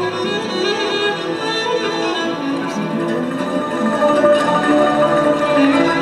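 Andalusian-style ensemble music: violins bowed upright on the knee, with an acoustic guitar, playing a continuous melody of held notes.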